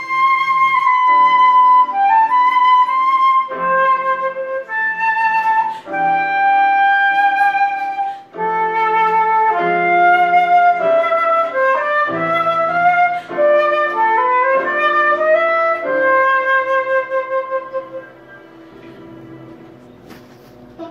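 Concert flute playing a slow melody of held notes with vibrato, over a sustained electronic keyboard accompaniment. The music ends about two seconds before the end.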